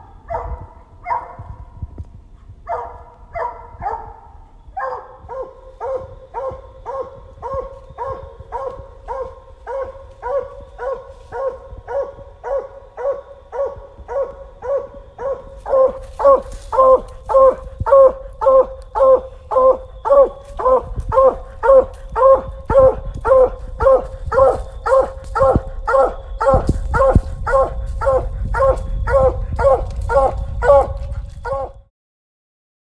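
Coonhound barking treed, a steady chop of about two barks a second that grows louder about halfway through: the hound is telling that it has a raccoon up the tree.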